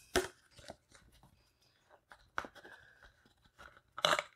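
Hands handling a plastic water bottle and clear vinyl tubing: scattered soft clicks, taps and crinkles of plastic, with one sharper click about two and a half seconds in.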